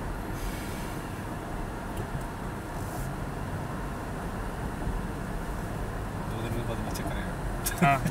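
Steady low road and engine noise heard inside the cabin of a moving Toyota car driving at moderate speed.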